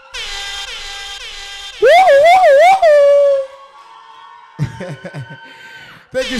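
Air horn blasts: a held buzzy note, then about two seconds in a loud blast that swoops up and wobbles up and down in pitch three times before settling, followed by fainter tones.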